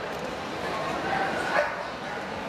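A dog barking briefly about one and a half seconds in, over the chatter of a crowd in a large hall.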